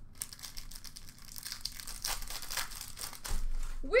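Trading cards and plastic card packaging being handled, a busy crinkling, rustling crackle.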